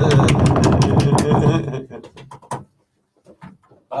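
A small group making as much noise as they can: overlapping shouts and whoops with a run of sharp claps. It breaks off about two seconds in, leaving a few last claps and then a short lull.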